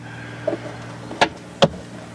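Two sharp knocks about half a second apart as the hinged wooden lid of a bedside storage box is shut, over a steady low hum.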